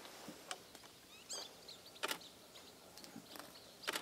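Faint outdoor quiet broken by a few short sharp clicks, the loudest near the end, and one brief high wavering bird call about a second in.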